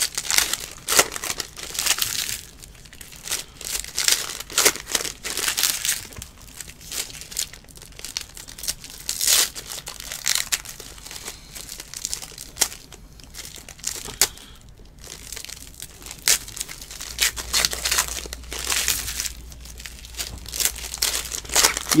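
Foil trading-card pack wrappers being torn open and crumpled by hand, in irregular bursts of sharp crinkling.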